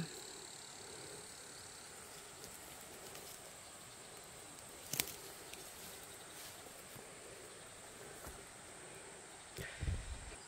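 Faint steady insect chirring, a thin high drone over a soft background hiss, with one sharp click about halfway through.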